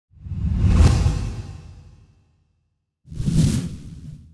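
Two whoosh sound effects with a deep rumble underneath, the first swelling and fading over about two seconds, the second shorter and starting about three seconds in: logo-reveal transition sounds.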